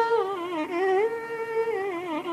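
Carnatic violin playing a melody in raga Mohanam: a sustained note that dips and returns with gliding gamaka ornaments, then slides downward near the end.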